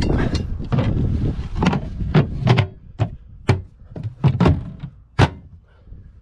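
Knocks and thuds at a boat's moulded gas-bottle locker as the gas bottle is turned on and the locker is closed. About a dozen sharp knocks come over several seconds, with a last sharp knock about five seconds in.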